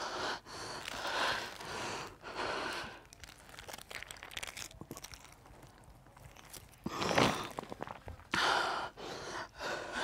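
A woman's heavy breaths and sighs as she cries, coming in bursts in the first few seconds and again near the end. In between, faint crinkling and small clicks of a plastic water sachet as she drinks from it.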